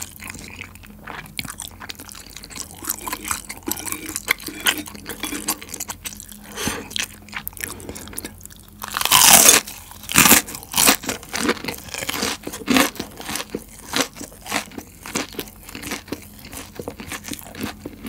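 Close-miked chewing of crispy boneless fried chicken, with small crunches throughout. A loud crunchy bite comes about nine seconds in, followed by a run of crisp crunches.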